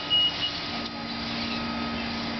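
Steady street noise with a low engine hum, as from a city bus idling at the curb, and a faint high tone that stops about half a second in.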